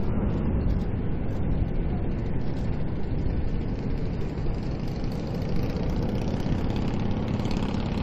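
Jet engines of Air Force One, a Boeing 747 (VC-25A), at takeoff thrust as it lifts off and climbs away: a steady, loud, low rumble of jet noise.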